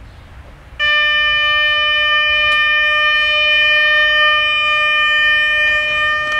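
Horn of an approaching Siemens Desiro diesel multiple unit, sounded in one long, steady blast that starts about a second in.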